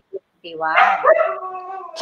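A woman's long drawn-out vocal cry, rising in pitch and then held steady for about a second, after a brief gap.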